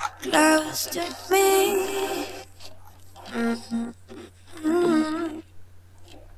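A sung vocal line separated out of a heavily compressed and clipped electronic track by real-time stem separation, with the drums and bass removed. It comes as several phrases with pauses between them, and the vocal carries heavy reverb. A faint low hum stays underneath.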